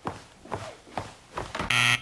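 Footsteps on a wooden floor, about two a second, then near the end a short, loud electronic buzzer tone.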